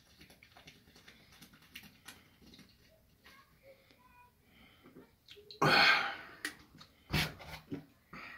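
A man gulping milk drink straight from a plastic bottle, with faint swallowing sounds, then a loud breathy gasp for air about five and a half seconds in as he comes off the bottle, and a shorter puff of breath a second or so later.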